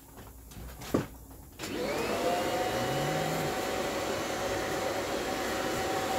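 A sharp click, then a vacuum cleaner motor starts about a second and a half in, its whine rising and settling into a steady run. It is sucking the air out of a plastic bag through a hose nozzle held in the bag's opening, to compress a foam cushion.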